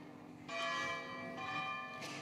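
Church bell striking the half hour (half past six), two strokes about a second apart, each ringing on and slowly fading.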